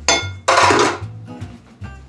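A stainless steel mixing bowl clanking: a sharp metallic knock that rings, then a louder clatter about half a second in. Soft acoustic guitar music plays underneath.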